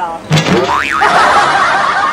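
A comic sound effect: a quick boing-like pitch glide up and down, followed by a busy warbling sound that runs on, louder than the talk around it.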